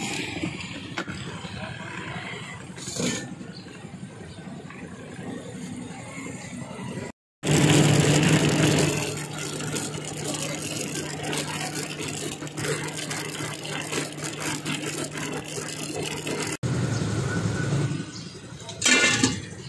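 Roadside street noise with an engine running steadily. It breaks off briefly about seven seconds in, then comes back louder until a cut near the end.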